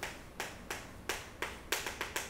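Chalk writing on a chalkboard: a quick run of sharp chalk taps and strokes, about three a second.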